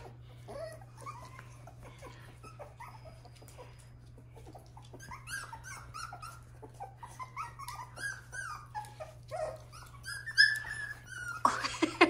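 Miniature Schnauzer puppies calling: many short, high-pitched cries that rise and fall, faint at first and coming thick and fast from about five seconds in.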